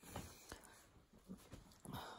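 Near silence: a few faint clicks and soft rustles of handling, with a slightly louder soft rustle near the end.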